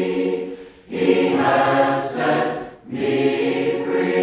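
Choir singing slow, sustained phrases, with two brief breaks between phrases, about a second in and near three seconds in.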